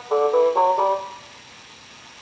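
Short musical jingle of a few quick stepped notes that ends about a second in, the sting that opens a new section of a children's audio cassette, followed by faint tape hiss.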